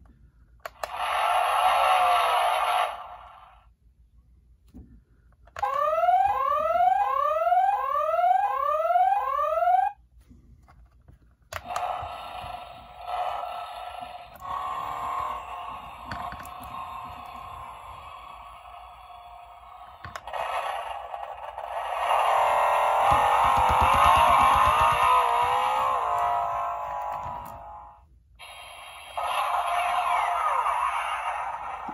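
Spin Master The Batman (2022) Batmobile toy playing its built-in electronic sound effects in play mode, one clip after another with short pauses between. A brief burst comes first, then a run of about five rising electronic sweeps repeating a little faster than one a second, then longer engine and action effects that swell louder in the second half.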